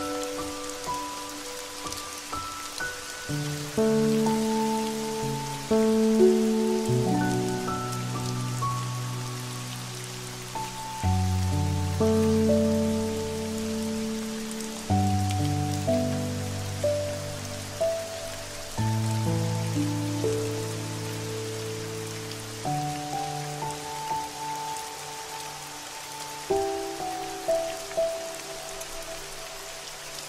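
Slow, calm music of held chords and low bass notes, each struck and fading, changing every few seconds, over a steady patter of rain.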